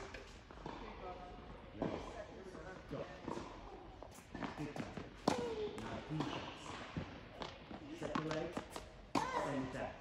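Tennis ball struck by a racket and bouncing on an indoor hard court, in sharp knocks, with the loudest hit about five seconds in.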